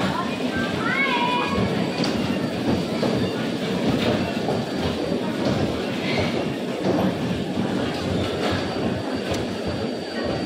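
Electric bumper cars powered from an overhead wire grid, running around the rink with a steady mechanical din.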